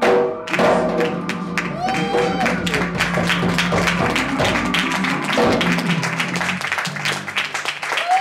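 A live band's closing djembe strikes and a held bass and keyboard chord ringing out under audience applause, with one whoop from the crowd about two seconds in. The chord dies away near the end.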